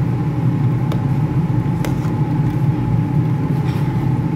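A steady low mechanical hum with a thin steady whine above it runs under the stirring. A metal ladle clicks twice against the steel pot.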